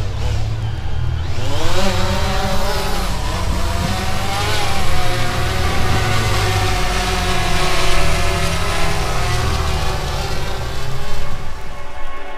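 DJI Phantom 3 quadcopter's motors and propellers spinning up for takeoff, with a rising whine about a second or two in, then a steady buzzing hum as the drone lifts off and hovers, over a steady low rumble.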